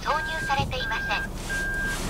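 Toyota Crown's dashboard warning chime beeping: one high tone repeated evenly, three beeps in about two seconds.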